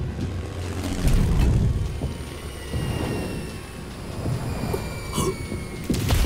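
Sound effects of an air raid: a heavy low rumbling, and from about two and a half seconds in a long, slowly falling whistle like a dropping bomb.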